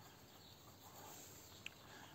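Near silence: faint outdoor room tone, with one small tick near the end.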